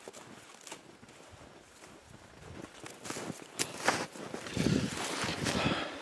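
Footsteps in deep snow, quiet for the first two seconds and then closer and more frequent, with a few sharper clicks about three and a half to four seconds in.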